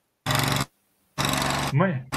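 Truck-mounted insecticide sprayer in the street, heard as a steady mechanical drone with a low hum, played back over a video call that cuts it in and out in two short bursts.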